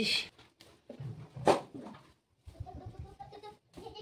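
Footsteps on a wooden floor, with one sharp knock about a second and a half in, then a drawn-out animal call near the end.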